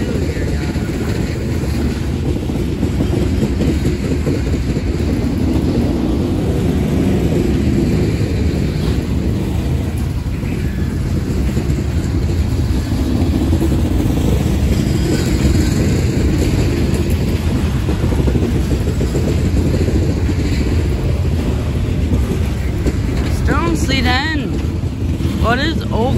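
A BNSF freight train's loaded coal cars roll past close by, making a steady, loud rumble of steel wheels on the rails.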